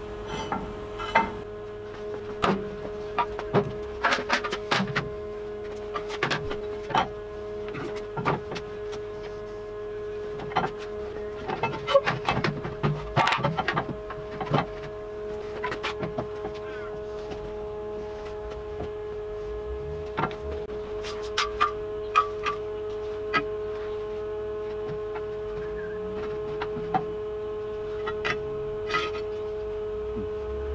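Repeated metal clanks, knocks and clicks as the steel parts of a Universal Bender and its mount are handled and worked, irregular and denser in the first half, over a steady one-pitch hum.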